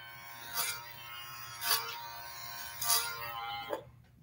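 Electric hair clippers running with a steady hum, used clipper-over-comb, with four louder strokes about a second apart as they cut through hair. The sound cuts off suddenly near the end.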